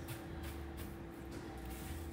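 Faint rustling of fingers mixing crushed cornflakes and paprika on baking paper, over a steady low hum and a faint steady tone.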